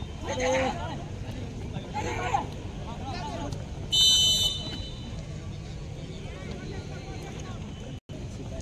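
Voices calling out across a football pitch, then one short, shrill referee's whistle blast about four seconds in, the loudest sound here.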